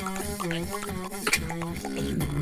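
Mouth beatboxing: vocal percussion with sharp clicks and snare hits, under a hummed, synth-like melody line in short stepped notes.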